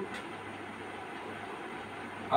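Marker pen writing on a whiteboard, faint, over a steady background hiss with a low hum.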